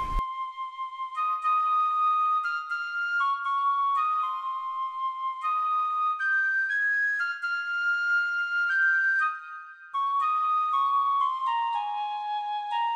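Background score: a solo flute-like melody of held notes moving stepwise, with a short break about nine and a half seconds in.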